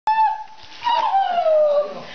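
Two high-pitched cries: a short one right at the start, then a longer, louder wail about a second in that falls steadily in pitch.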